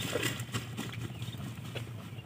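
Irregular light taps and splashes as a wet plastic net bag is handled and lifted out of shallow pond water.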